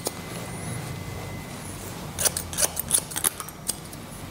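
Hair-cutting scissors snipping through short hair: a quick run of about ten snips, starting about halfway through.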